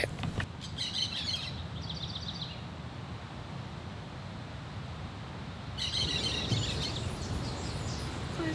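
Wild birds chirping and calling in the morning. One bout of calls starts about half a second in and includes a quick run of repeated notes; a second bout comes near the end. A low, steady background rumble runs underneath.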